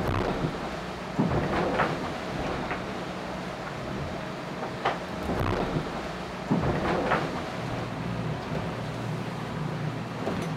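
Onboard noise of an IMOCA ocean racing yacht under sail: a steady low hum from the hull with water rushing past, and three louder surges of water against the hull.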